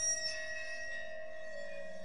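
A bell-like tone struck once at the start and left ringing steadily, with a few high overtones.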